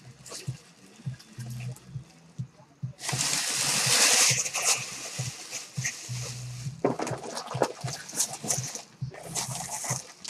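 Red tissue paper rustling and crumpling as it is pulled out of a cardboard box, loudest for about a second and a half a few seconds in. Near the end it gives way to the crinkle of a plastic bag as a bagged jersey is lifted out.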